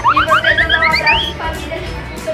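A cartoon-style rising whistle sound effect: a quick series of short upward swoops, each pitched higher than the last, climbing over about a second and a half, with background music under it.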